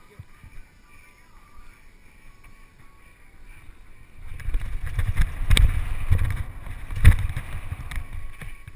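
Mountain bike riding fast over a dirt trail: from about four seconds in, a loud rumble of wind buffeting the microphone and tyres on dirt, with two hard knocks about a second and a half apart as the bike bumps and lands off small jumps.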